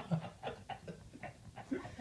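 Men laughing quietly and breathlessly in short, irregular gasps, right after a bout of louder laughter.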